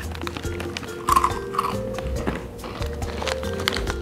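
Crispy Churrumais Flamas corn snack sticks being bitten and chewed into a table microphone, a run of short sharp crunches, over steady background music.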